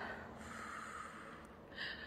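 A person's faint breath close to the microphone, lasting about a second and a half.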